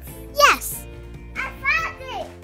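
A child's voice over steady background music: a high squeal that falls steeply in pitch about half a second in, then a short excited phrase near the end.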